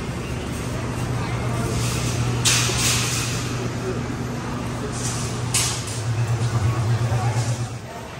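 A steady low machine hum that pulses quickly near the end, with two short bursts of hiss about two and a half and five and a half seconds in.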